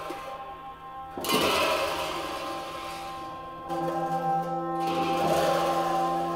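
Tibetan gyaling, double-reed ceremonial horns, played by monks in procession: several held notes sounding together, changing about a second in and again near four seconds in.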